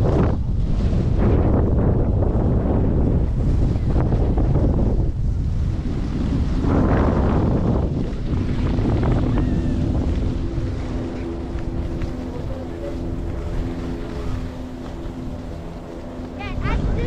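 Wind buffeting the microphone with the rushing scrape of sliding downhill on groomed snow, swelling in turns, loudest about seven seconds in. From about halfway a steady hum of several even tones comes in as the rushing eases.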